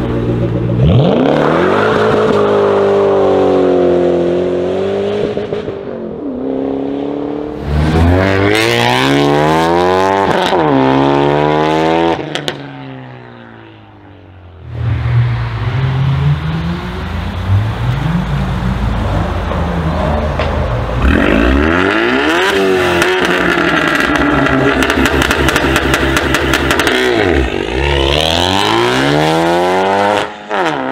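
Ford Mustang V8s, a Shelby GT500 among them, accelerating hard one after another: the engine note climbs and drops back at each gear change, with a brief quieter lull about midway.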